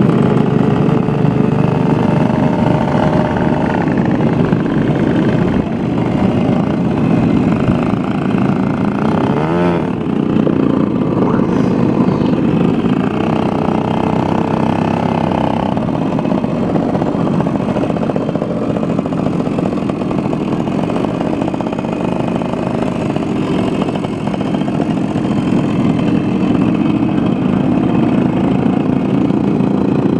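Several small two-stroke moped engines running close by, a steady engine drone with some of them revving up and down now and then.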